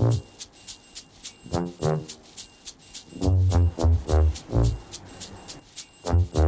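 Comedic background music: short, low, bouncing notes in brief phrases, heaviest a little past halfway, over a steady light ticking beat.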